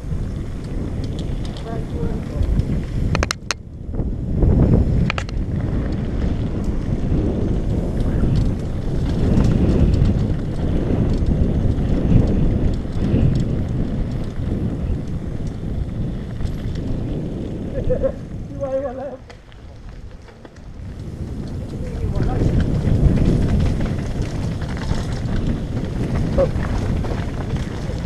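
Wind rushing over the microphone and the rumble and rattle of a downhill mountain bike rolling fast over a dirt and gravel trail. A couple of sharp knocks come a few seconds in, and the noise drops for a moment about two thirds of the way through.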